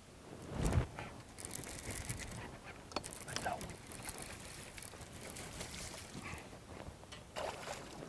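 A low thump just under a second in, then a hooked smallmouth bass splashing and thrashing at the water's surface beside the boat as it is played in on the line.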